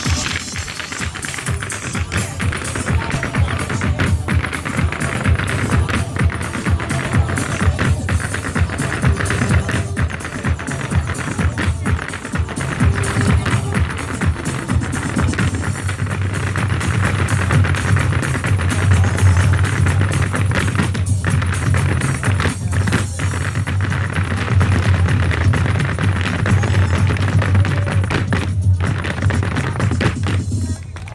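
Irish dancers' hard shoes drumming rapid, rhythmic taps on a wooden stage floor over live Irish dance music from a band with a heavy bass beat.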